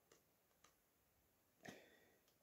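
Faint ticks of paper sheets being leafed through at the edge of a paper pad: two light ones in the first second, a louder one near the end.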